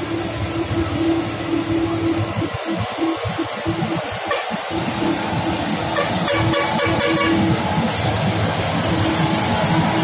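Diesel engine of a Nissan Diesel selfloader truck carrying an excavator, pulling steadily uphill under load. It grows louder as the truck comes close.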